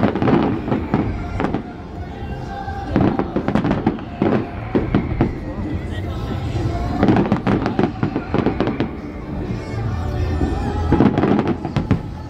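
Aerial fireworks shells bursting and crackling in clusters about every three to four seconds, four volleys in all.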